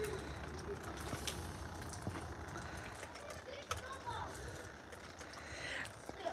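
Faint outdoor ambience during snowfall, with distant voices now and then and a few light clicks from the phone being handled.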